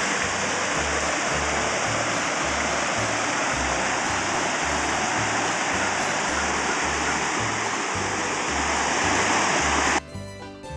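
Steady rushing noise like running water, with a low regular beat of background music underneath.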